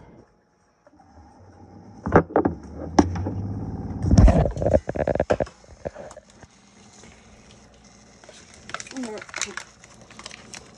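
Handling noises: several sharp clicks and knocks, the heaviest a deep bump about four seconds in, then a faint voice near the end.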